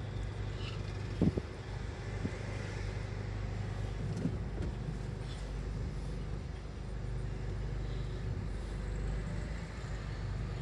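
Steady low rumble of a stationary car's idling engine heard from inside the cabin, with a short thump about a second in.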